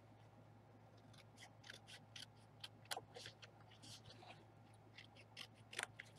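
Faint, scattered rustles and light ticks of paper and card being handled and slid over a cutting mat, over a low steady hum.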